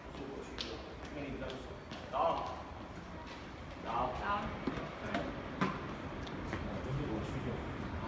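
Footsteps on a hard floor and paving, heard as scattered sharp clicks, over steady background noise, with brief snatches of voices about two and four seconds in.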